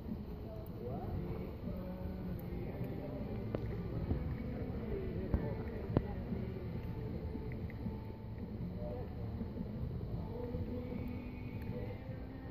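Indistinct voices over a steady background murmur, with a few short sharp clicks near the middle.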